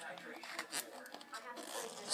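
Foil wrapper of a Pokémon card booster pack being torn open by hand: faint, scattered rips and rustles.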